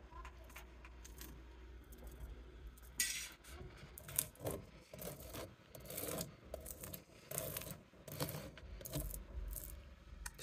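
A table fork raking wax cappings off a capped honeycomb frame to uncap it for extraction: faint, irregular scratching strokes, sparse at first and coming thicker from about three seconds in.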